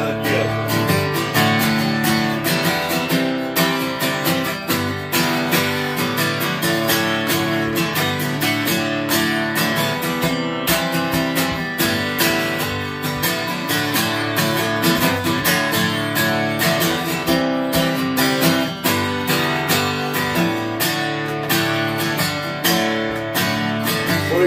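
Solo cutaway acoustic guitar strummed in a steady country rhythm, chords ringing, in an instrumental passage without singing.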